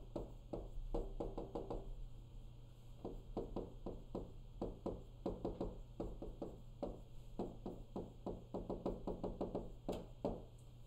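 Quick taps and scratches of a stylus tip on the glass face of a touchscreen whiteboard as words are written, several strokes a second in short runs with brief pauses, over a faint steady hum.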